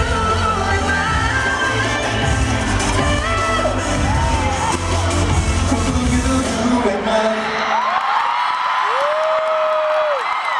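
A live K-pop song with singing and a heavy bass beat plays loud over arena speakers, with the crowd screaming along. The music stops about eight seconds in, leaving high fan screams and cheering.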